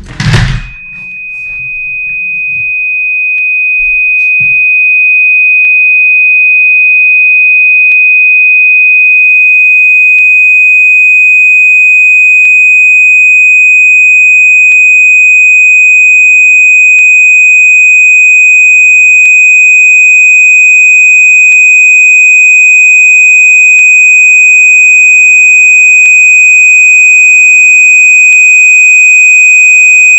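A single steady high-pitched electronic tone, a pure beep-like test tone, that swells in loudness over the first few seconds and then holds at full volume, with a brief loud burst just before it starts.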